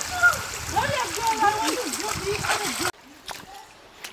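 Shallow river water splashing and running over rocks, under untranscribed voices. About three seconds in, the sound drops off suddenly to a much quieter stretch with faint water and a few small clicks.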